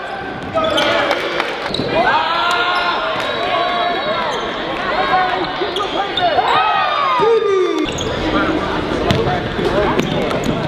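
Indoor basketball game in a gymnasium: many short sneaker squeaks on the court and a ball bouncing, mixed with players' and spectators' voices.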